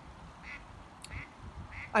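Ducks quacking quietly, short calls repeating about every two-thirds of a second.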